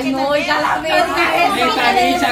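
Several people, mostly women, talking loudly over one another in an excited group argument.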